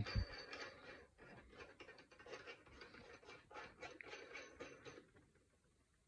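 Faint, irregular scraping and light clicking of a steel Lock-N-Load conversion bushing being screwed by hand into the threaded top of a cast-iron reloading press, its threads rasping as it turns. It stops about five seconds in.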